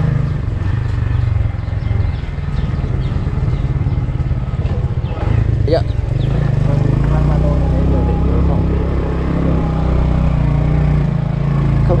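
Motorbike engine running at low road speed, heard from the rider's seat; its note shifts about halfway through.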